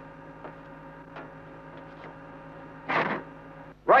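Steady machinery hum of a ship's engine room with a few faint ticks, and a brief louder rustle or breath about three seconds in.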